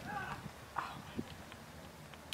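Distant human calls or whoops: a bending call right at the start and a short one a little under a second in, with a few faint clicks over quiet outdoor background.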